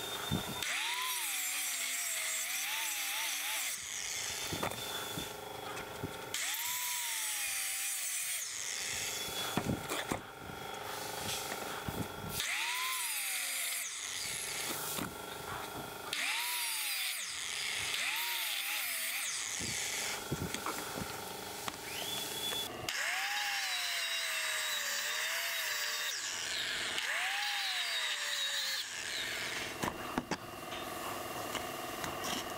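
Angle grinder with an abrasive cutoff wheel cutting through rectangular steel tube in about seven short passes of a few seconds each. The motor's pitch drops as the wheel bites into the steel and recovers between passes, over a constant high scratchy cutting noise.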